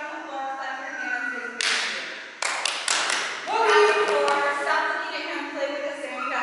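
People talking in a large hall, with a short burst of hiss and then a quick run of sharp taps about halfway through.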